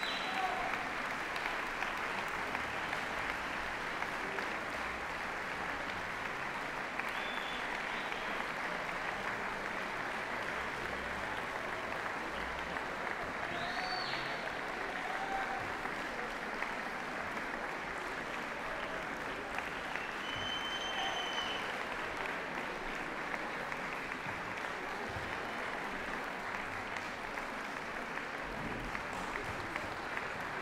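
Large audience applauding steadily, welcoming the orchestra as it walks on stage, with a few short high whistles rising over the clapping.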